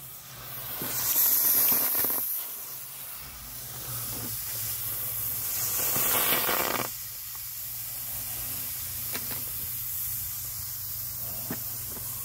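TNT M-100 smoke bombs hissing as they vent smoke, with louder surges of hiss about a second in and again around six seconds, then a steadier, quieter hiss.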